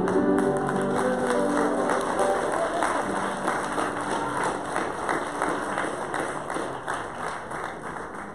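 A congregation's singing ends on held notes, then the congregation applauds, the clapping slowly fading away.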